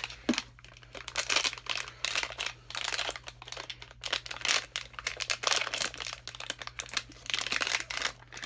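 Blind-box packaging being crinkled and torn open by hand, in irregular rustling bursts, as a Vinylmation vinyl figure is unwrapped.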